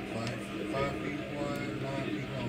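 Indistinct voices from a television film playing in the room, over a low steady hum.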